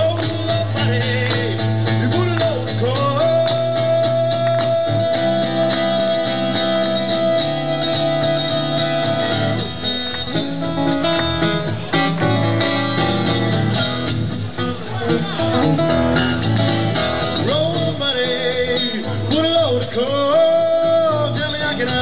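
Live solo acoustic blues: an acoustic guitar strummed and picked throughout, with a long held wordless vocal note in the first part and the voice sliding and wavering back in near the end; the middle stretch is guitar alone.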